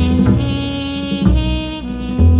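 Jazz trumpet playing sustained notes over walking upright bass in a small acoustic combo, with the notes changing about a second and a quarter in.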